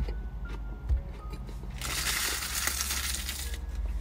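A short dull thump about a second in, then a paper burger wrapper being crumpled, a crinkling rush lasting under two seconds.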